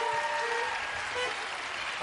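Red button accordion sounding a few reed notes as the bellows are squeezed by an unpractised player: one chord held for under a second, then a couple of short ones. Audience applause runs under it.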